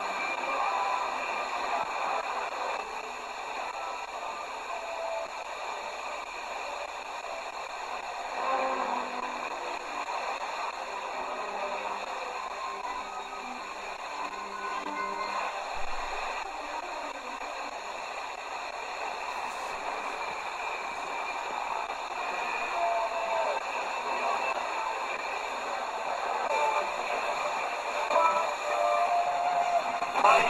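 Tecsun PL-310 portable radio's speaker playing music from a weak, distant FM station in the OIRT band, buried in hiss: a sporadic-E signal at the edge of reception while the receiver is stepped between about 68.3 and 68.5 MHz.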